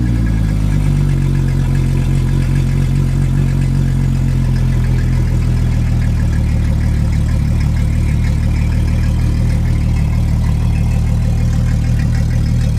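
2008 Yamaha F250 four-stroke V6 outboard, cowling off, just after starting: its speed drops from a brief rev in the first moment, then it idles steadily.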